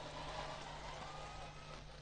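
A pause in a speech over an outdoor public-address system: only faint background noise with a steady low hum.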